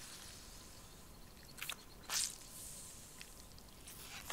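A lemon half squeezed by hand, its juice splashing and dripping into a camping mug of liquid, with two short squelching bursts a couple of seconds in, the second the loudest.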